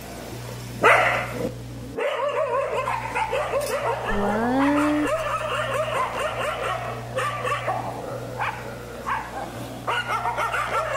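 Several dogs barking and yelping in quick, overlapping calls from about two seconds in, over a steady low hum.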